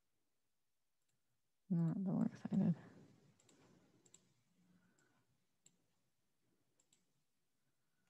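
A short wordless voice sound, loud against the quiet, about two seconds in. After it come a few sparse, faint clicks from a computer keyboard and mouse.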